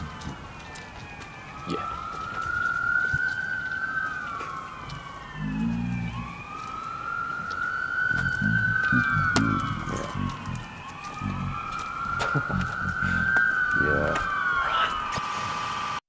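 An emergency vehicle siren wailing, its pitch rising and falling slowly in three long cycles.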